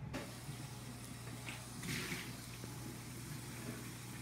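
Quiet kitchen room tone: a steady low hum under a faint hiss, with a faint brief rustle about two seconds in.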